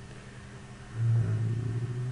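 A man's low closed-mouth 'mmm' hum, held steady for about a second, starting about a second in, over faint steady background hiss.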